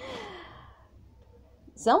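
A woman sighing once: a breathy exhale with a falling pitch that fades away over about half a second.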